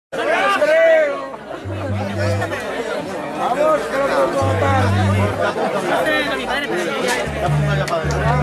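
People chattering, while an electric bass guitar through its amplifier sounds three single low notes, each held about a second.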